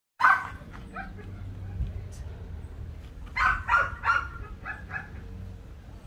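A dog barking: one loud bark at the start, then a quick run of four or five barks a little past the middle, fading to a couple of softer ones.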